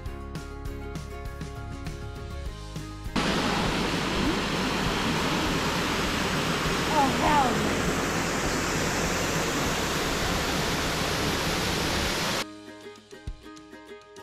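Background music, cut off about three seconds in by the steady rush of a waterfall over rocks, which runs for about nine seconds with a brief wavering sound near the middle. Music returns near the end.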